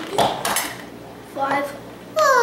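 Trouble game's Pop-O-Matic dice bubble pressed: a snap of the plastic dome and the die rattling inside it, about a quarter to half a second in.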